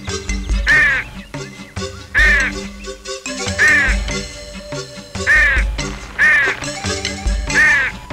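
Background music with a bass beat, over which a cartoon crow caws six times, each a short harsh call rising and falling in pitch, spaced about a second and a half apart.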